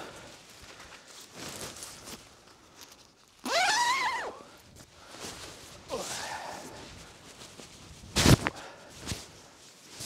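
Rustling, handling noises and footsteps as a small tent is pitched by hand. A short squeal rises and falls in pitch about three and a half seconds in, and a single sharp knock, the loudest sound, comes about eight seconds in.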